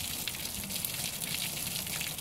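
Water poured from a pitcher splashing steadily over a child's head and body and onto a wooden deck.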